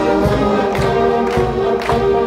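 Student concert band of brass and woodwinds playing sustained chords, with percussion hits marking the beat about twice a second.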